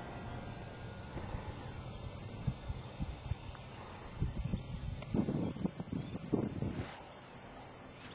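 Wind buffeting the microphone in irregular low rumbling gusts, heaviest in the middle to latter part.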